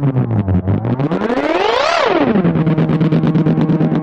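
Electric guitar repeats through a Pulsar Echorec tape-echo delay plugin, warped in pitch as the disk speed is changed. The echoing tone slides down, sweeps sharply up to a peak about two seconds in, drops back and then holds steady.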